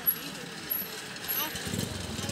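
Water splashing as a khora lift net is hauled up against a wooden boat, with a sharp knock just after the start. Near the end a low, fast-pulsing motor drone starts up.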